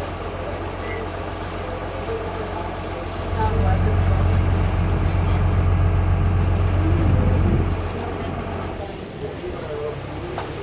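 Engine of the boat carrying the camera running steadily with a low hum, growing louder about three seconds in as it speeds up and easing back near the end.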